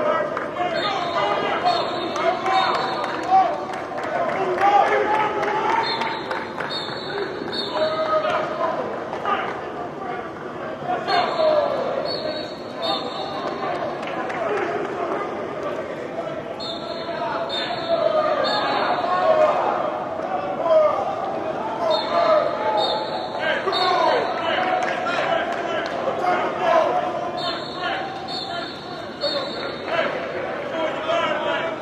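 Many voices of players and coaches shouting and calling out over one another during football drills, echoing in a large indoor practice hall, with scattered thuds and knocks.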